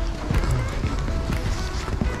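Background music with a few short held notes, over a steady low rumble.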